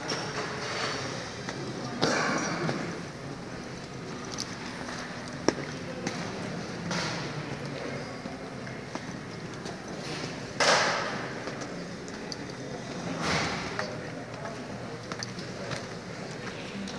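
Indistinct background voices of people nearby, with a few brief rushes of noise and one sharp click about five seconds in.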